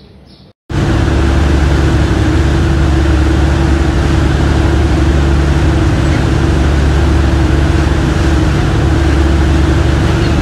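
A boat's engine droning steadily, with the rushing of its wake, starting abruptly about a second in and running loud and unchanging.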